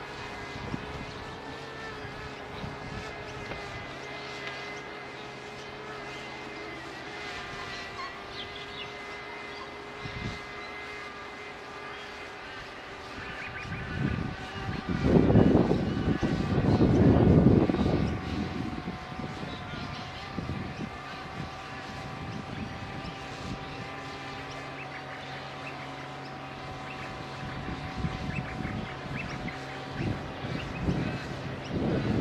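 Quadcopter camera drone's propellers whining with several steady tones while it hovers and flies overhead. A louder rushing noise swells for a few seconds just past the middle.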